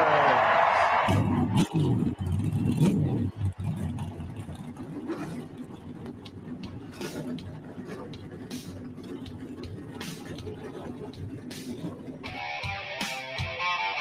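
Race car engines in a produced sound effect: a falling pass-by pitch fades out, then engines fire and rev in a low rumble that settles into a steady engine noise with sharp clicks. A guitar music intro comes in near the end.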